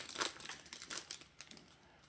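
Plastic wrapper of a pack of baseball cards crinkling faintly as the pack is opened and the cards pulled out, dying away after about a second and a half.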